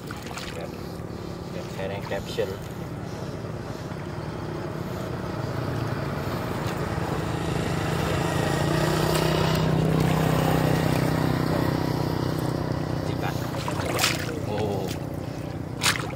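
A motorbike engine passing on the road, its hum growing louder to a peak about two-thirds through and then fading, with a couple of sharp knocks near the end.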